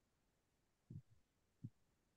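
Near silence, broken by two faint, short low thumps, one about a second in and one near the end.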